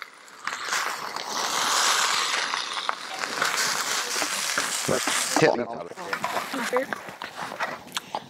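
Shrimp fried rice sizzling on a Skottle propane disc griddle as it is scooped out: a steady hiss with a few scrapes that fades out about five and a half seconds in.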